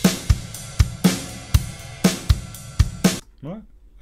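Stereo drum kit loop of kick, snare and ride cymbal, compressed with a long release time. The compressor stays down between hits, so the ride stays at an even level in the gaps instead of surging up: no pumping or breathing. The loop stops about three quarters of the way through.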